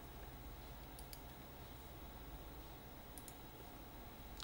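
A few faint computer mouse clicks over quiet room hiss, one about a second in and a quick pair just after three seconds, as a spreadsheet value is copied and the Paste Special dialog is opened.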